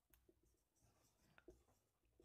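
Faint strokes of a marker writing on a whiteboard, barely above silence.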